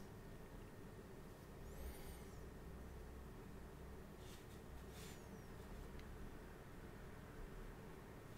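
Near-silent room hum with a few faint, brief swishes of a small soft round brush stroking wet ink onto textured watercolour paper, about two seconds in and again around four to five seconds.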